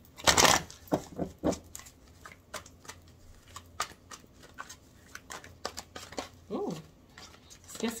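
A deck of oracle cards being shuffled and handled by hand: many soft, irregular card clicks and flicks, with a louder rush of noise about half a second in. A brief voiced sound comes shortly before the end.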